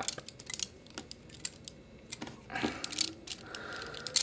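Hard plastic joints and parts of a Transformers Voyager-class The Fallen action figure clicking and ticking as they are twisted and folded by hand, a scattered run of small clicks.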